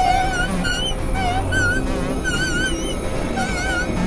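Dense, layered experimental electronic music. Short warbling, wavering high tones recur about once or twice a second over a thick low rumble.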